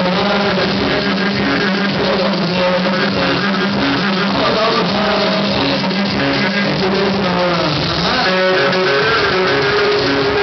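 Bağlama, the Turkish long-necked lute, playing a fast plucked instrumental passage over a low, steady accompaniment, with no singing.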